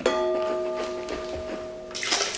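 A stemmed wine glass struck as it is set down on the table, ringing with a clear bell-like tone of several pitches that fades slowly.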